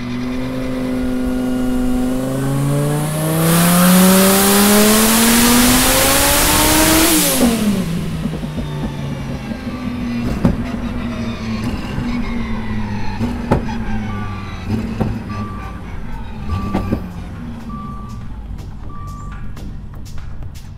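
Twin-turbo Dodge Viper V10 making a full-throttle dyno pull: the engine note climbs steadily for about seven seconds and gets much louder and rougher for its last few seconds. Then the throttle closes, the revs drop quickly back toward idle, and a few sharp cracks follow. Near the end there is a run of five short beeps.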